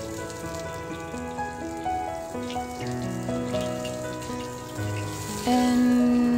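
Background music of held notes that change in steps, over the sizzle of ginger slices frying in hot oil in a wok.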